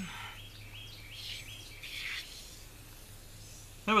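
Aerosol can of tire foam spraying onto a truck tire in several short hisses, each lasting under half a second, over the first couple of seconds.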